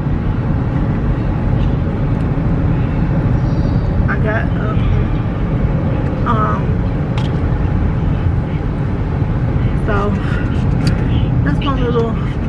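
Steady road and engine rumble inside a moving car's cabin, with a few faint snatches of voices.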